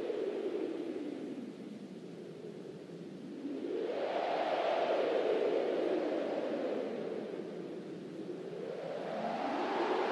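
A rushing, whooshing noise that swells and fades in slow waves, sweeping up in pitch about four seconds in, sinking again, and rising once more near the end.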